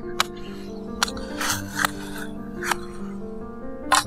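Background music over five sharp clicks, a knife blade cutting a strip of green bamboo, with a short rustle near the middle.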